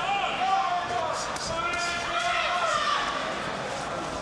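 Ringside voices shouting over one another in a boxing hall, with a few sharp knocks of punches landing about a second in.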